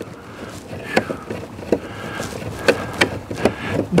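Screwdriver bit working at a rounded-out screw on a metal RV breaker-panel cover: a handful of irregular sharp clicks and scrapes as the tip slips in the stripped head without turning the screw.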